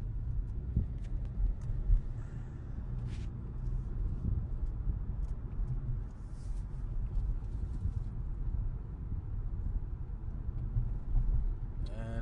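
Steady low rumble of a car in motion, heard from inside the cabin, with a few faint clicks.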